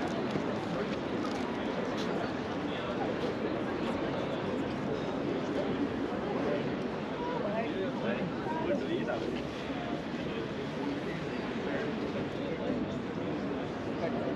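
Outdoor crowd chatter: many people talking at once in overlapping conversations, a steady blend of voices with no single speaker standing out.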